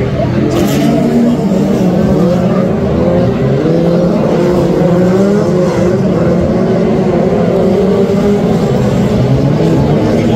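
Several Brisca F2 stock car engines racing around the oval, their pitch rising and falling as the cars accelerate, lift off and pass.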